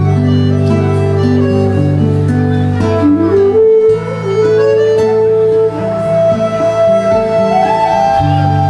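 Live folk band playing an instrumental tune: acoustic guitar, fiddles, flute and accordion, with melodic lines over sustained low notes. The low notes break off briefly about halfway through, then resume.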